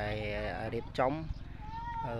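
People's voices talking nearby, over a steady low rumble.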